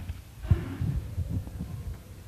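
Irregular low thumps and rustling of people moving: congregation members settling into wooden pews and a reader stepping up to the lectern. The loudest thump comes about half a second in.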